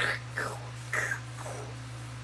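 Four short, breathy puffs of a person's voice without clear pitch, about half a second apart, over a steady low hum.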